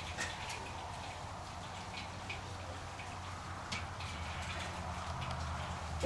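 Light rain falling, a steady hiss with scattered short drip-like ticks, over a steady low hum.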